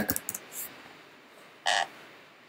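A few faint computer-keyboard taps as a short word is typed, then a brief croak-like sound about three-quarters of the way in.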